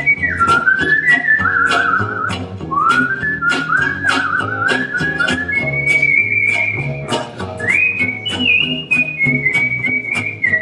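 A woman whistling a jazz melody into a microphone: a pure, clear tone with slides and vibrato. Under it, gypsy jazz rhythm guitar strums on the beat and a double bass plays.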